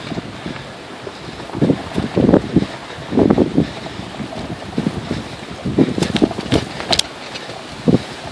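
Off-road vehicle riding over a rough dirt trail, with steady wind noise on the microphone and irregular knocks and rattles as it jolts over bumps, the sharpest clicks coming a little before the end.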